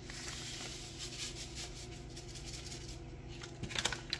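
Dry seasoning mix poured and shaken from a paper packet onto raw chicken breasts in a crockpot: a faint, soft pattering hiss, strongest in the first second or so, with a few small clicks near the end.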